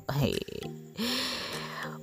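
A man's short 'hey', then a brief musical sound effect: a few steady low notes followed by a hiss over a low tone that fades out.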